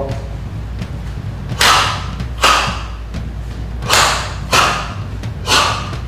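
Bare hands striking a wall pillar again and again in karate hand conditioning: about five sharp blows in loose pairs.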